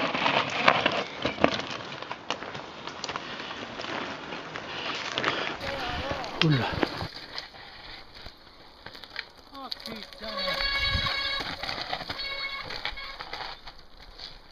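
A mountain bike rolling downhill over a loose, stony forest singletrack, with tyres crunching on stones and the bike rattling over them, loudest as it passes close at the start. Later it is quieter, with only faint rolling and rattling.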